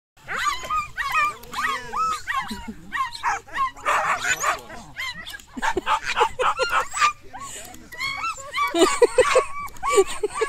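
Cairn Terriers yapping and yipping excitedly at a lure-coursing chase, a string of short high-pitched yaps about three a second, with a faster run of yaps near the end.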